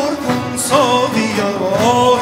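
Male voice singing a Persian classical vocal line, its pitch bending and sliding in ornaments, accompanied by a plucked tar.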